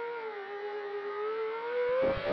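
FPV racing drone's brushless motors whining in one clear tone that dips slightly in pitch and then climbs steadily through the second half.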